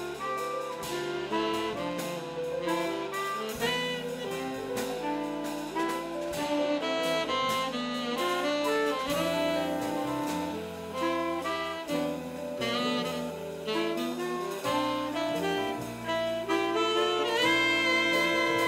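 Jazz big band playing, with the saxophone section carrying the lines over drums, bass and piano. A rising phrase comes in near the end.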